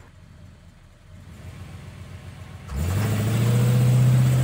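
A motor vehicle engine starts about three quarters of the way in, its pitch rising quickly and then holding steady as it runs; before that there is only faint low noise.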